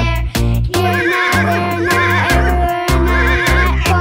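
Upbeat children's song music with a steady bass beat, over which a cartoon horse whinnies several times in wavering, quavering cries.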